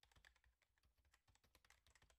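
Near silence, with very faint, rapid, irregular clicking.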